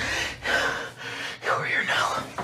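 A man gasping in short, broken breaths, panicked and out of breath.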